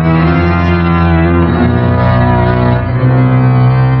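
Loud organ music in sustained chords, shifting to a new chord about a second and a half in and again about three seconds in: the closing music of a horror radio drama episode.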